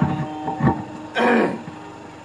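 A short break in the guitar playing: a last low note is held faintly under a few knocks and handling sounds, with one short noisy burst just past the middle.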